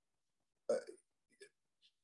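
A single short, throaty mouth sound from a man, about two-thirds of a second in, followed by a few faint lip and breath clicks.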